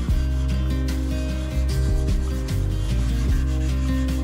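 Background instrumental music, with soft pastel being rubbed by hand across paper in short rasping strokes.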